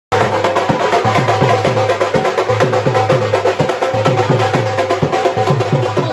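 Drums beaten in a fast, even rhythm, about four to five strokes a second, each low stroke dropping in pitch, with steady held tones sounding above them.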